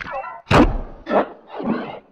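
A quick series of three sharp thunks, about half a second apart, the first the loudest, after a brief pitched, voice-like sound at the start.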